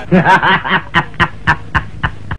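A man laughing loudly in quick repeated bursts, about four a second.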